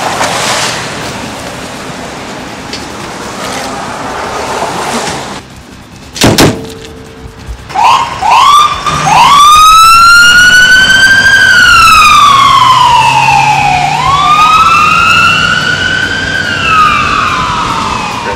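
A sharp bang about six seconds in. Then an ambulance siren starts with a few short rising whoops and settles into a slow wail that rises and falls twice.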